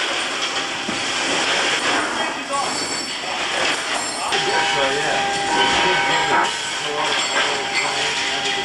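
Steady loud engine noise filling a military transport aircraft's cargo hold, with a steady whine joining about four seconds in.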